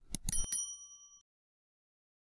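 Subscribe-button animation sound effect: a few quick clicks followed by a short, bright bell ding that rings out for about a second.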